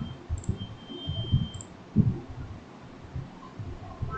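Computer mouse and keyboard clicking: about half a dozen short, irregular clicks and taps, the loudest about two seconds in.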